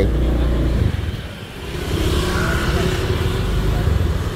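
Motorbike traffic passing along a street. The engine noise dies down about a second in, then builds again as another bike comes closer.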